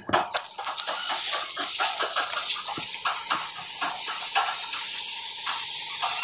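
Gravity-feed compressed-air paint spray gun spraying white paint onto a vehicle's body panel: a loud hiss of air and atomised paint. It comes in short, broken spurts at first, then runs steadily from about two seconds in.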